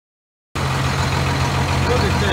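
After half a second of silence, a 1993 Dodge Ram 350's Cummins 12-valve inline-six turbo diesel cuts in suddenly, idling steadily with a deep, even note.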